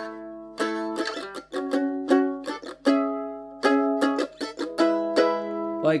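Eight-string F-style mandolin strummed in a slow chord rhythm: short muffled string rakes with the strings deadened, then chords fretted on the last part of the beat and left to ring.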